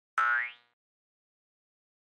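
A short cartoon 'boing' sound effect: one pitched tone that glides quickly upward, lasting about half a second.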